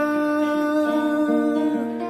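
A man's voice holding one long wordless note over a picked acoustic guitar, its notes sounding about twice a second.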